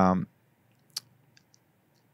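A man's drawn-out hesitant 'ah' trails off, then near silence is broken by one sharp click about a second in and two faint ticks after it.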